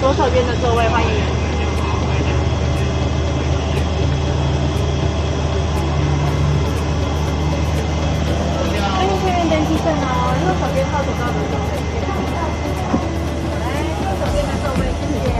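Steady low hum of an airliner's cabin air-conditioning on the ground during boarding, with a faint steady whine above it. Voices speak briefly near the start and again around the middle.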